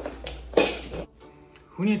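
A sudden half-second burst of clattering noise about half a second in, the loudest sound here, then a man's voice starts near the end.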